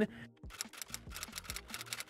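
Rapid typewriter key clicks, several a second: a typing sound effect laid over text being typed out on screen.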